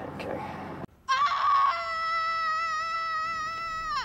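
One long high-pitched held note with a slight wobble, starting about a second in after a brief break and lasting about three seconds, then sliding quickly downward near the end.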